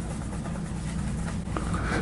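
Steady low hum of the room, with the faint scrub of a brush working paint in a plastic watercolor palette well and a light tick near the end.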